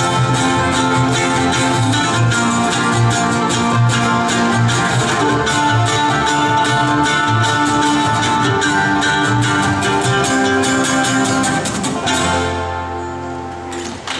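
Acoustic string band of banjo, mandolin, acoustic guitar and upright bass playing an instrumental bluegrass passage. About twelve seconds in, the band stops on a final chord that rings and fades.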